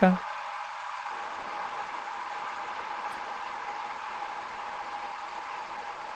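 Steady background hiss on a video-call audio line, with a faint steady tone in it, after the end of a spoken word in the first moment.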